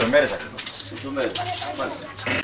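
Indistinct voices talking, quieter than the speech on either side, in a small room.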